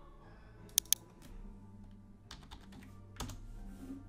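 Computer keyboard keys clicking as a stock ticker symbol is typed in: two sharp clicks about a second in, a quick cluster a little after two seconds, and one more past three seconds.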